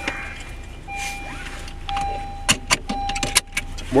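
Keys jangling and clicking inside a car, with a cluster of sharp clicks in the second half, over a low rumble and a thin steady high tone that breaks off and resumes.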